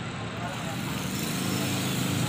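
A motor vehicle's engine running close by in street traffic, a low steady hum that slowly grows louder.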